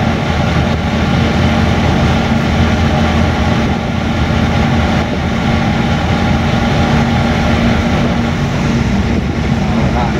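Truck engine and road noise heard inside the moving cab: a steady low drone that holds an even pitch throughout.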